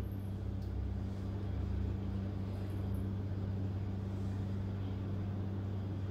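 A steady low hum with a faint even hiss behind it, unchanging throughout, with no distinct knocks or handling sounds.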